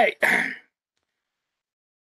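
A person clearing their throat once, a short rasp just after the end of a spoken "okay".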